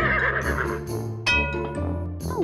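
A horse whinny sound effect that fades out about a second in, over children's background music, with a bright new chord entering about a second and a half in.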